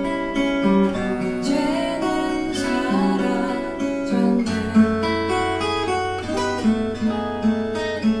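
Cort Gold O6 acoustic guitar, capoed, playing a slow chord accompaniment with chords changing about once a second. A low bass note rings steadily under the chords from about halfway on.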